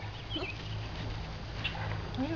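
A few faint bird chirps over a steady low rumble.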